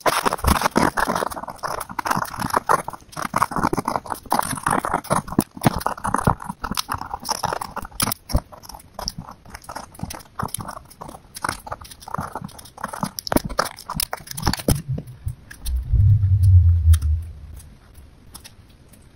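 Pencil scratching on paper in rapid, dense strokes while a portrait is sketched. About fifteen seconds in, the scratching turns softer and a brief low rumble comes in.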